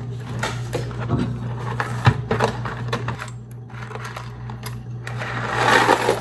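Dry penne pasta rattling out of its cardboard box into a stainless steel measuring cup: scattered clicks and clatter of the box and pieces, then a denser rush of penne pouring into the metal cup near the end.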